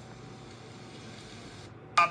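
Steady faint background hiss and low hum, room tone with no speech; shortly before the end the upper part of the hiss drops away.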